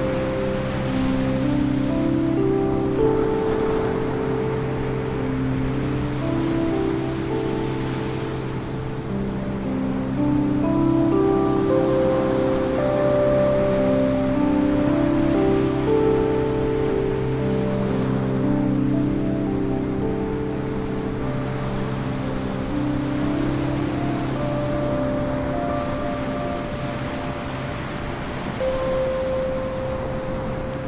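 Slow ambient music of long, overlapping held notes that change pitch every couple of seconds, over a steady wash of ocean surf breaking on a beach.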